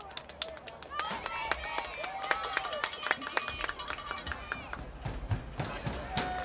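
Young cheerleaders chanting a cheer together, with many sharp hand claps, busiest from about a second in until past the middle.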